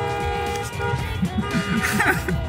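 Car horns honking in long, steady held tones in a parking garage, one blast after another, from cars stuck in a queue.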